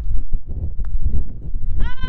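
Wind rumbling on the microphone, with a faint putter tap on a golf ball about halfway through. Near the end a person lets out a high-pitched, drawn-out 'ooh' that rises and then falls in pitch.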